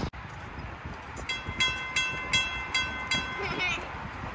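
Mechanical railroad crossing bell ringing: about six strikes, just under three a second, each ringing on. It starts about a third of the way in and stops near the end.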